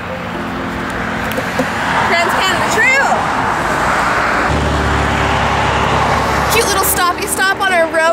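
Road traffic on a highway: a swelling rush of tyres and engines as cars pass, with a low rumble from a passing vehicle about halfway through. Voices come in near the end.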